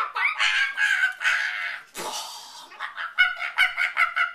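Two women laughing hard and shrieking in high, honking voices, breaking into quick repeated bursts of laughter in the second half.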